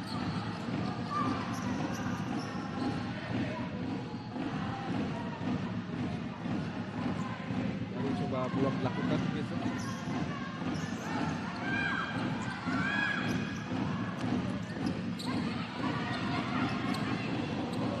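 Sound of a futsal match in an indoor hall: the ball being kicked and bouncing on the hard court, players calling out and a steady crowd din in the stands, echoing in the hall.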